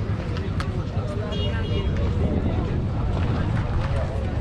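Indistinct voices of people talking over a steady low rumble.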